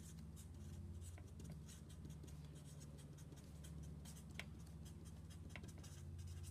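Felt-tip marker writing capital letters on a sheet of paper: a run of short, faint strokes over a steady low hum.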